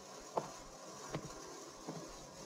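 Three faint soft taps, evenly spaced about three-quarters of a second apart, over a low steady hiss.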